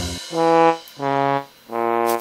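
Sad trombone sound effect: three short brass notes, each a step lower than the one before, the comic "wah-wah-wah" that marks a letdown.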